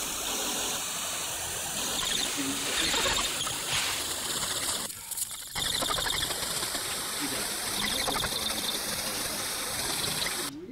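A steady rushing hiss with a slight dip about five seconds in.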